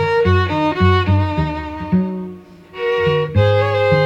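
Violin and cello duo playing an instrumental passage: the bowed violin carries the melody over short, repeated low cello notes. There is a brief lull a little past halfway.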